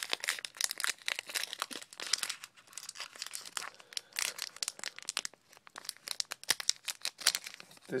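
Foil booster-pack wrapper of a Pokémon trading card pack crinkling and tearing as it is worked open by hand, a dense run of sharp crackles.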